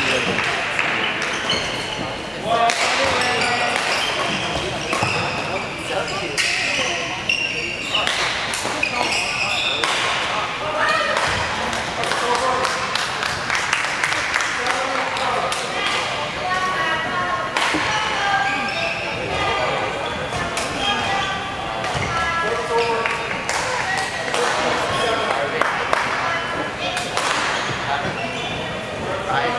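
Badminton play in a large hall: sharp racket hits on the shuttlecock and squeaking court shoes, with people talking throughout.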